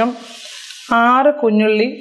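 A short voice phrase, the same one repeated about every second and a half as if looped, sounds once about a second in. A faint, steady hiss fills the gap before it.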